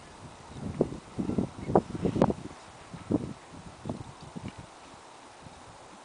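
Hoofbeats of a cantering horse on a soft arena surface: dull, irregular thuds, loudest in the first half and then fainter.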